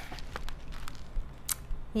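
Quiet room tone with a few faint clicks and light handling noise as a spiral sketchbook is held up.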